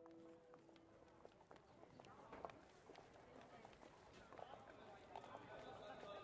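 Near silence: a held music tone fades out at the start, leaving faint open-air ambience with scattered soft clicks and taps.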